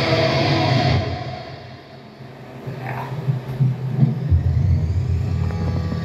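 An electric guitar cover through an amp ends, its last notes fading out over the first second or two. Then come low rumbling and scattered knocks as the recording device is handled and moved close to the guitar, over a steady low amp hum.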